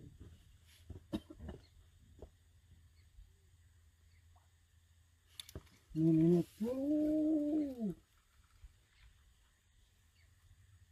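A few faint sharp clicks, then about six seconds in two drawn-out vocal calls, the loudest sound here: a short one at a steady pitch, then a longer one that rises and falls.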